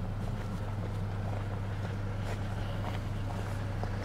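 Mazda CX-5 SUV engine running steadily at light throttle as the vehicle crawls slowly up a gravel slope, a low even hum with a few faint crunches from the tyres on gravel.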